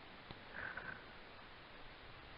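Near silence with a faint steady hiss, and a person's faint short sniff about half a second in.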